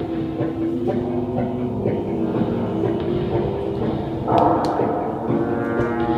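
Free-improvised ensemble music: several held, overlapping low tones sounding together. A louder, brighter sound comes in about four seconds in, with two sharp clicks just after.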